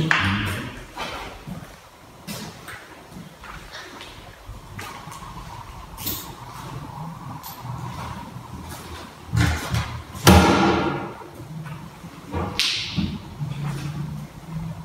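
Quiet rustling handling noise and soft footsteps as someone walks through a carpeted room, with a few louder thumps between about nine and thirteen seconds in.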